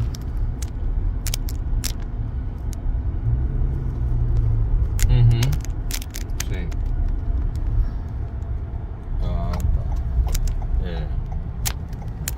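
Steady low rumble of a car driving, heard from inside the cabin, with scattered sharp clicks.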